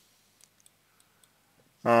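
Near silence with a handful of faint, scattered clicks, then a man's voice starts speaking near the end.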